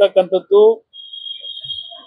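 A man's speech breaks off, then a single steady high-pitched electronic beep sounds for just over a second, quieter than the voice.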